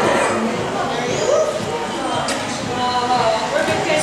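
Overlapping voices of several people talking, with no single clear speaker.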